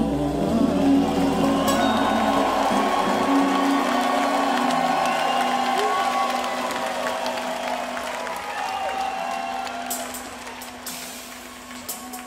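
A live soul band holds its final chord and lets it ring out, the sound gradually fading toward the end, with some crowd cheering and applause underneath.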